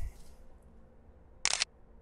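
Smartphone camera shutter sound: one short, sharp click about one and a half seconds in, as a photo is taken.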